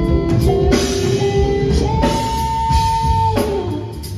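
Live band playing: drum kit, electric guitar, bass and keyboards, with a long held note in the second half.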